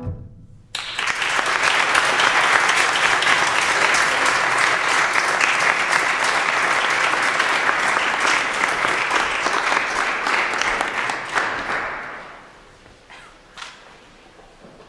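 Applause from a small seated audience, breaking out just under a second in, holding steady for about eleven seconds and then dying away near the end.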